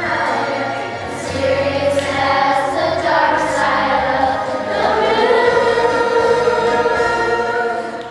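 A group of children singing a song together, ending on a long held note.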